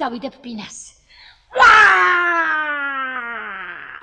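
A woman's voice: a few short spoken syllables, then after a brief pause one long, loud wail that slides steadily down in pitch for about two and a half seconds.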